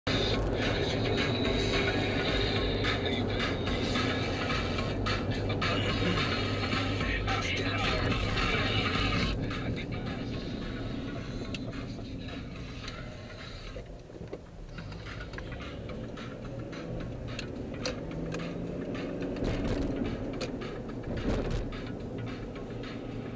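Inside a moving car's cabin: music with a voice playing over engine and road noise. The low rumble is heavier for the first nine seconds or so, at freeway speed, then drops as the car slows for city streets.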